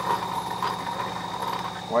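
Air compressor running steadily: a low, even hum with a faint high whine above it.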